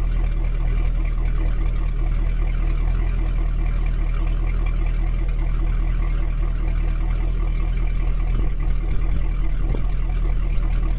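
Sterndrive boat engine idling steadily on a garden-hose flush attachment, its Volvo Penta SX-M outdrive just filled with gear oil, with cooling water splashing out around the drive.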